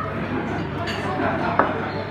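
A small white bowl knocked against a wooden tabletop by a baby, a couple of sharp knocks, the loudest about a second and a half in, over background voices.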